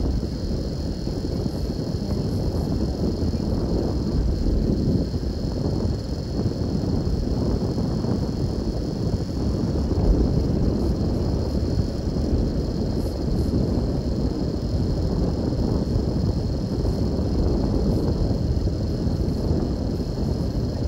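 Steady road and engine rumble heard inside a moving car's cabin, with a thin, steady high hiss above it.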